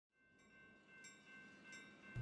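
Near silence, with a few very faint high notes starting about half a second apart.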